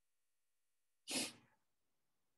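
A single short sneeze about a second in, sudden and over within half a second.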